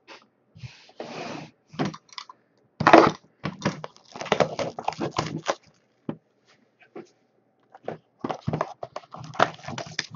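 Cellophane shrink wrap being torn off a sealed cardboard trading-card hobby box and the box being opened: crinkling plastic and cardboard rustles in irregular bursts. A sharp knock about three seconds in is the loudest sound.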